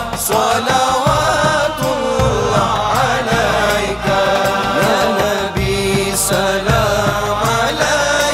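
Male voices singing a naat, a devotional song in praise of the Prophet, in long melodic held lines with a backing choir, over a steady low rhythmic backing.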